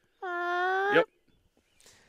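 A dog whining: one long, steady whine of just under a second.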